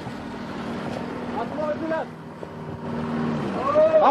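A car's engine running steadily, with a voice calling out twice in long rising-and-falling notes, the second one louder, near the end.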